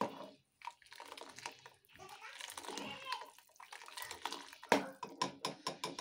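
Tomato rasam sloshing and bubbling in a steel pot as a steel ladle stirs it, with sharp clinks of the ladle against the pot late on.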